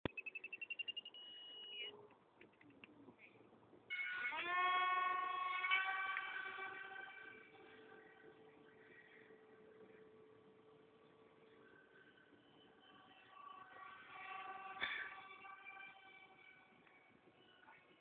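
Small electric motor and propeller of a radio-controlled foam glider whining. A rising whine in the first two seconds; then, about four seconds in, the whine starts suddenly, climbs in pitch and holds steady, fades over the next few seconds and swells again between about 13 and 16 seconds.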